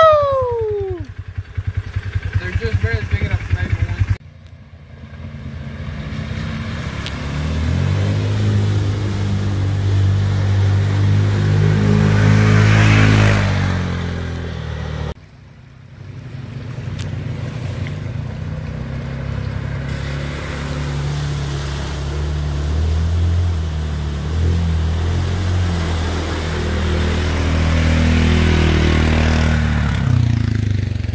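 Side-by-side UTV engine running under load while driving through a shallow creek, its pitch rising as the throttle opens and easing off again, with water splashing under the tyres. The sound breaks off abruptly twice.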